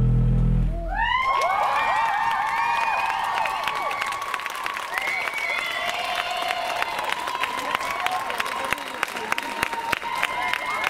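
Heavy bass of the dance music ends about a second in, and an audience breaks into loud high-pitched cheering and applause that carries on steadily.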